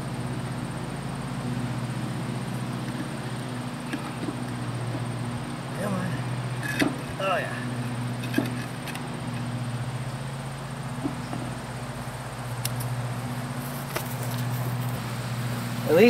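Heavy trailer tire and steel wheel being worked onto its hub, giving a few short metallic knocks and clunks, over a steady low mechanical hum.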